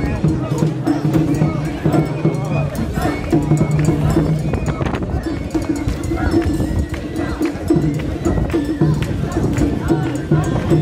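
Mikoshi bearers' voices chanting together in repeated, drawn-out calls over the noise of a dense street crowd.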